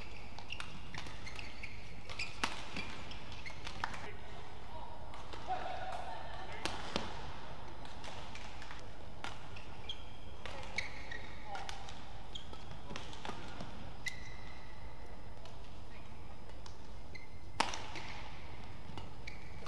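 Badminton rackets striking a shuttlecock during rallies: sharp, irregular cracks a second or more apart, the loudest near the end, with short high squeaks of shoes on the court floor between them.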